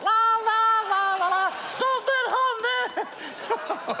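A man laughing in a high-pitched voice: a long held cry, then a run of short laughs.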